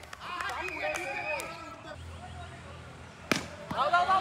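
Cricket bat striking the ball once, a sharp crack about three seconds in, followed by a lighter knock; faint voices before it and shouting starting right after.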